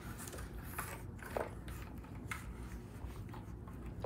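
Faint, scattered rustles and small clicks of a cat moving about on the floor against a corrugated cardboard scratcher.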